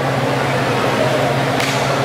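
Steady hum and crowd murmur in a large, echoing gymnasium, with one sharp knock near the end.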